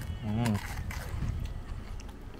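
A man's short closed-mouth "mm" hum about half a second in as he bites into crispy prawn tempura, followed by faint chewing clicks over a low background rumble.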